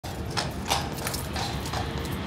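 A Household Cavalry horse's shod hooves clopping on stone setts: about five sharp, uneven strikes as it steps restlessly, impatient to get back to its stable.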